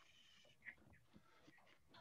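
Near silence: faint room tone with a couple of soft, brief noises.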